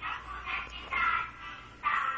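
A toddler's high-pitched voice: three or four short calls or squeals.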